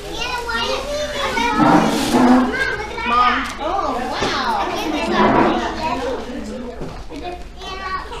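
Several young children talking and calling out over one another in high voices.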